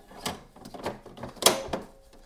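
Plastic ink cartridge being pushed into an HP DeskJet 2742e's cartridge carriage: several light plastic clicks and scrapes, then one sharp snap about one and a half seconds in as the cartridge clips into place.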